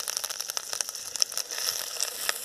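Green chillies and curry leaves sizzling in hot oil in a metal kadai, a steady hiss with many quick crackling pops.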